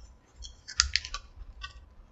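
Cardboard takeout box being opened: a cluster of crackly clicks and scrapes from the cardboard lid, mostly in the first half, with a few softer clicks after.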